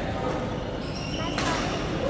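A badminton racket strikes a shuttlecock once, a sharp smack about one and a half seconds in, ringing in a large hall over faint background voices.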